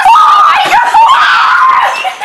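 Girls screaming loudly in high-pitched, drawn-out shrieks, two long screams with a brief break about a second in.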